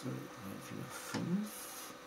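Mostly speech: a man's voice trailing off and then a short 'okay', over a faint steady hum and background hiss.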